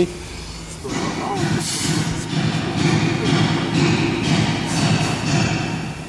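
Compressed air hissing from a leak in a truck's air system, over a steady low mechanical rumble.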